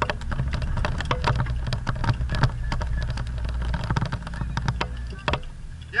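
Off-road 4x4's engine running under load as it climbs a steep slope, a steady low rumble, with many sharp knocks and rattles as the vehicle jolts over rough ground.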